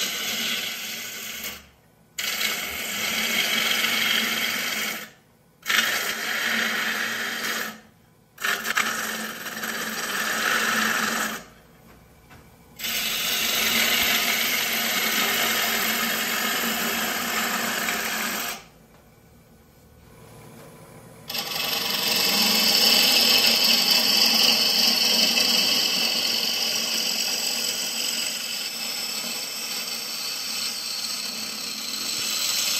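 A gouge shearing the outside of a spinning yew-and-mahogany bowl blank on a wood lathe: a hissing, scraping cut in several passes, each stopping abruptly for a moment, with the longest break about two-thirds of the way through. The final pass is the loudest and brightest.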